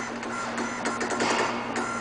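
Electro-hydraulic valve actuator running in quick, uneven spurts as it follows a changing control signal: its motor and pump whine and whir over a steady electrical hum.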